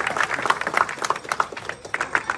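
Audience applauding, a dense patter of many hands clapping at once.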